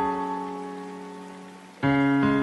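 Slow, soft piano music: a sustained chord slowly dies away, and a new chord is struck near the end.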